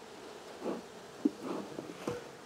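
Faint buzzing of honeybees around an opened hive, with a few soft handling sounds as a wooden frame is pried up and lifted out.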